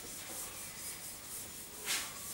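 Chalk scratching faintly on a blackboard in short strokes, about two a second, as hatch marks are drawn along a curved mirror line. A slightly louder stroke comes near the end.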